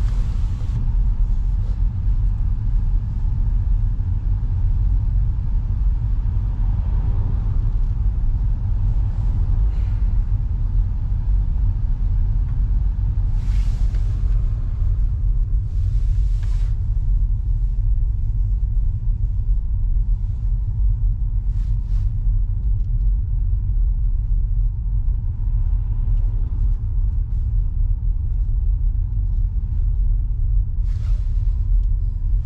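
Steady low rumble of a car driving slowly, heard from inside the cabin, with a few short hisses in the middle.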